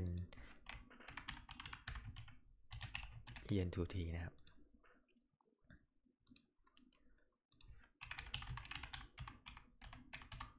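Typing on a computer keyboard: quick runs of keystrokes in the first couple of seconds and again near the end.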